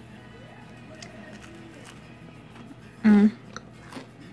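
A woman chewing a bite of a freshly baked cookie, with one short hum of approval about three seconds in. A television plays faintly in the background.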